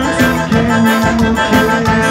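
Live forró band music, accordion holding sustained notes over a steady beat.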